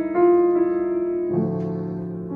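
Grand piano played solo: a sustained chord struck just after the start, then a lower chord about a second and a half in, left ringing and slowly fading, as at the close of a piece.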